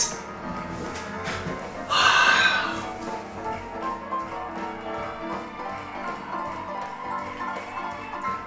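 Live small-band swing jazz from piano, upright bass and drums, with a steady ticking cymbal beat. About two seconds in, a short burst of audience cheering rises over the band.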